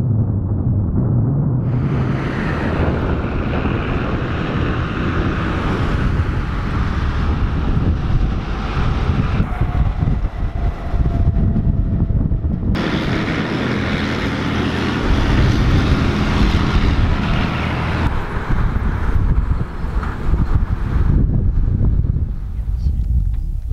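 Heavy diesel engines of BM-30 Smerch rocket launcher trucks running as they drive, with wind on the microphone. The sound changes abruptly about two seconds in and again near the middle.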